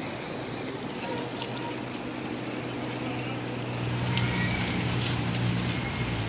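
Road traffic: a motor vehicle's engine running nearby with a steady low hum that grows louder about four seconds in as it comes closer.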